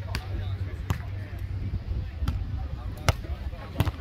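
Beach volleyball being struck by players' hands and forearms during a rally: five sharp slaps of the ball at uneven intervals, the loudest two in the second half.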